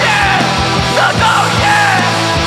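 Heavy rock band playing live: pounding drums and cymbals, distorted electric guitars and screamed vocals.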